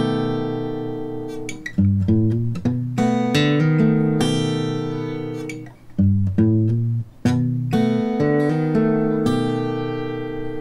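Steel-string acoustic guitar fingerpicked on a B7 chord in a blues pattern. A ringing chord fades out, then comes a quick run of picked notes, and the pattern goes round about three times.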